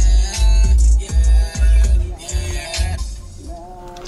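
Music with a heavy, pulsing bass beat playing through the car's stereo, cut off about three seconds in.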